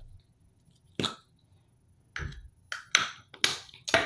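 Light plastic clicks and taps of makeup packaging being handled and set down on a countertop: about half a dozen short knocks, one about a second in and the rest close together in the second half.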